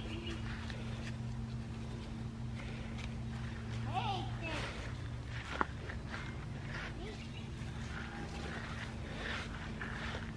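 A toddler's faint babbling over a steady low hum, with one sharp click a little past halfway.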